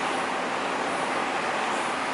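Steady hiss and rumble of road traffic, cars passing continuously on the road beside the tram line.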